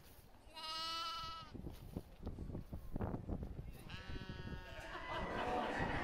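A sheep bleating twice, a clear call about half a second in and a weaker one around four seconds, with short scuffling knocks between the calls.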